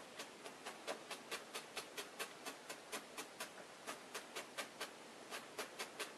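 Felting needle stabbing repeatedly through wool fleece into a foam heart form, pushing the overhanging fibres into place. Each stab makes a short, sharp click, about four a second in an uneven rhythm.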